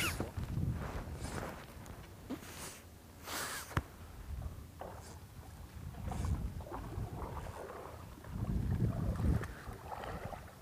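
Paddles dipping and splashing in the river beside a small paddled boat, a handful of short strokes a second or so apart, over a low fluctuating wind rumble on the microphone.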